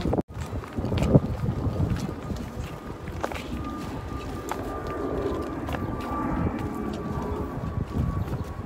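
Wind buffeting a phone's microphone outdoors, a rumbling noise with scattered light footstep clicks as the phone is carried. The sound drops out for an instant just after the start, and a faint steady high tone runs in the background from about three seconds in.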